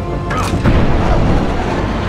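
Film soundtrack music with a deep boom about half a second in, over a sustained low rumble.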